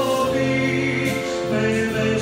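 A man singing a Christian worship song through a microphone and PA, with held keyboard chords and steady low notes underneath.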